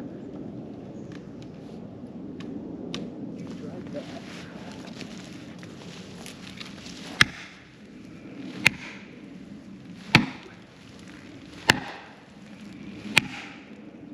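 Five hard blows of an axe striking felling wedges in a tree's cut, about one and a half seconds apart, starting about halfway through.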